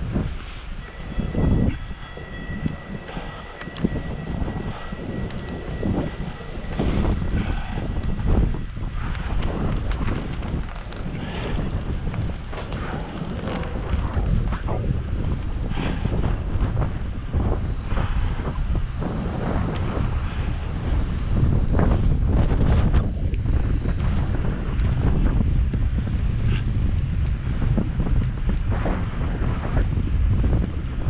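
Wind buffeting an action camera's microphone on a moving bicycle, over a steady low road and tyre rumble with frequent knocks from bumps in the pavement. A thin steady whistle sounds for several seconds near the start.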